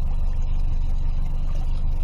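A boat's outboard motor running steadily at low speed, a constant low rumble as the boat moves slowly.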